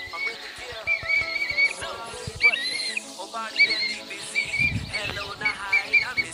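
Human whistling: short, wavering, high whistled calls repeated every second or so, used to move young calves along. Background music runs underneath.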